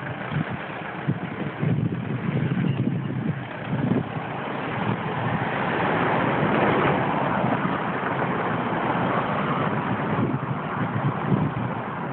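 A car driving past on the street: tyre and engine noise that swells to a peak about halfway through and then eases off.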